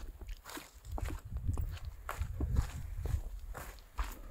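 A hiker's footsteps crunching over dry grass and stony ground, irregular steps several times a second, over a low rumble on the microphone.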